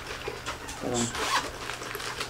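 Soft rustling and small clicks of a padded fabric drone carry bag being rummaged through by hand, with a brief low voice sound about a second in.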